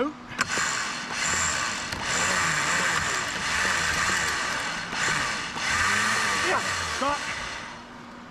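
Truck winch hauling a truck up a snowy slope, its motor and gears running under load for about seven seconds, with the truck's engine at full throttle underneath. The winch is doing most of the pulling.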